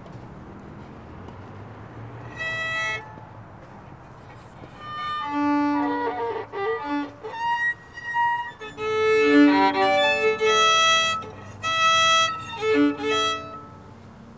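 Violin played with a bow: one held note about two seconds in, then a short phrase of separate notes with brief gaps between them.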